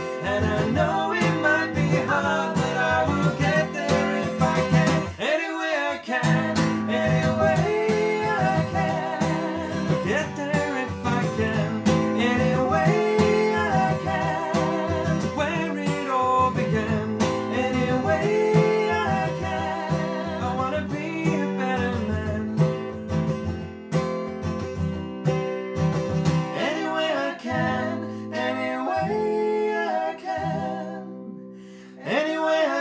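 Acoustic guitar strummed while a man and a woman sing together, a folk song performed live.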